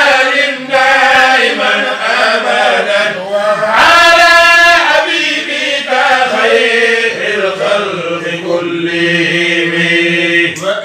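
Voices chanting an Islamic devotional chant in Arabic, sung continuously with long held notes.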